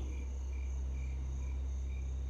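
Crickets chirping, a short, evenly repeated chirp about twice a second, over a low steady hum.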